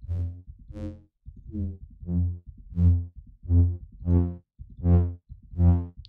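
A synthesized brass lead in the Vital soft synth plays about nine repeated single notes, each swelling in and fading. The patch is a unison saw wave run through a comb flanger filter, and the filter cutoff is being tuned between notes, so the brightness shifts from note to note.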